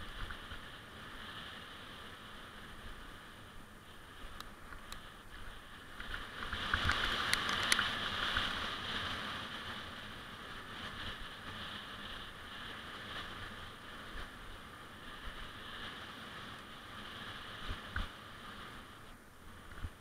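Wind rushing over a helmet camera and mountain bike tyres rolling on a dry dirt trail, with a few small knocks from bumps. The rush swells about six seconds in and eases off over the next few seconds.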